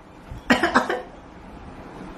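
A person coughing, two or three short coughs together about half a second in.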